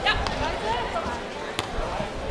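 A beach volleyball being struck by hand: a few sharp, short smacks, over faint chatter of voices.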